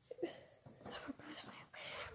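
Faint whispering by a person, with short soft breathy sounds.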